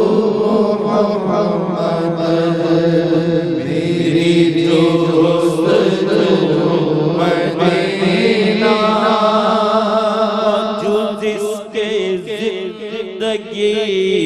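Male naat khwan singing a devotional naat into a microphone, with no instruments, his voice carrying long wavering held notes over a steady low drone.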